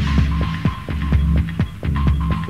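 Electronic dance music from a club DJ set: a steady kick drum at a little over two beats a second over a sustained low bass drone and a high held tone.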